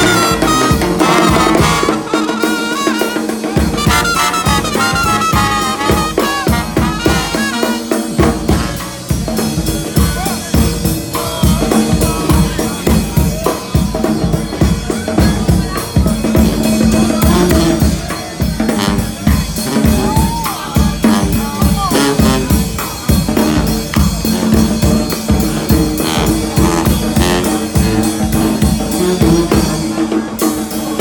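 New Orleans street brass band playing: trumpets, trombone and sousaphone over a steady bass drum and snare beat. The horn lines stand out most in the first several seconds, and the drums carry more of it later on.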